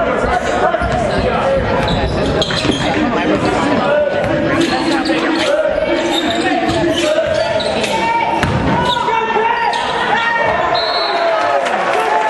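Basketball dribbled on a hardwood gym floor during a game, repeated bounces echoing in the large gymnasium, with voices of players and spectators mixed in.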